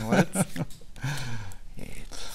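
A man's voice making two short, drawn-out murmurs, the first at the start and the second about a second in, with no clear words.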